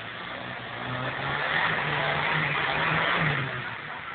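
Suzuki Vitara 4x4's engine pulling hard under load up a steep loose slope. It grows louder from about a second in, holds, then eases off near the end, with a hiss over it.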